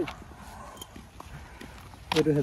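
A few faint footsteps on a grit-strewn asphalt road, with scattered light taps and scuffs.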